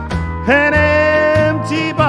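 A man singing a country song into a microphone over a backing track with a steady beat. About half a second in he slides up into a long held note that bends down near the end.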